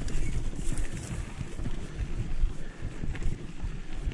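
Mountain bike rolling along a rough, dry dirt singletrack: irregular knocks and rattles from the bike and tyres over the ground, over a steady rumble of wind on the microphone.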